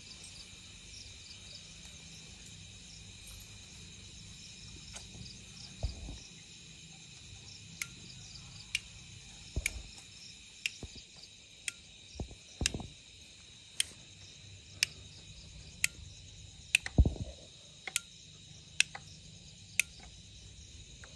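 Steady high-pitched insect chirring, like a cricket chorus. From about eight seconds in, sharp ticks come about once a second, with a few dull thumps among them; the loudest thump falls near the end.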